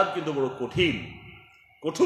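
Only speech: a man preaching. His voice trails off into a short pause a little past a second in, then resumes just before the end.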